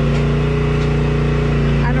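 Steady drone of an engine running at constant speed, powering a log splitter at work.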